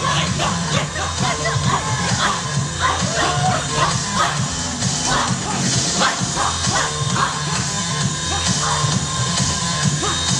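Loud routine music with a steady bass beat, with short shouts from the performers over it.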